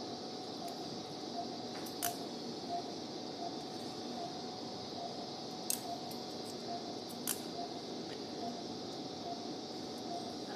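Operating-room background of a steady hum and hiss. A faint patient-monitor beep repeats about every 0.7 s, and steel surgical instruments click sharply three times while the skin is being sutured.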